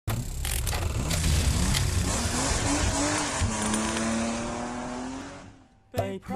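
Race-car sound effect: an engine note swooping up and down over a loud screech of tyre squeal, then settling to one steady note and fading out near the end.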